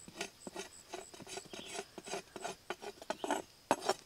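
Large knife blade scraping and rubbing against freshly cut tree bark in a string of short, irregular strokes, smearing scent oil into the cuts.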